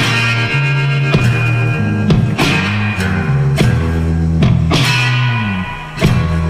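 Electric guitar playing rock music: sustained, ringing chords struck roughly once a second, with a note bending downward in pitch shortly before the end.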